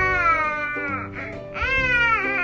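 A toddler crying: one long wail that falls in pitch, then a second wail that rises and falls about one and a half seconds in, over steady background music.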